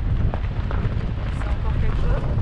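Loud, steady low rumble of wind buffeting the microphone and road noise from a vehicle driving along an unpaved track, with faint voices under it.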